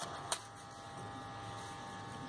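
A low, steady electrical hum made of several fixed tones, with one light click about a third of a second in.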